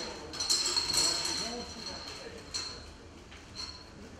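Draw balls clinking against a glass draw bowl as a hand rummages among them and pulls one out: a quick run of clinks in the first second, then a couple of single clicks.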